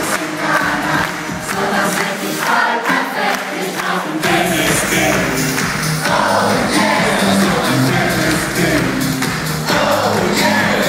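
Live concert music from the stage PA with the crowd singing and cheering along; the bass and full beat come in about four seconds in.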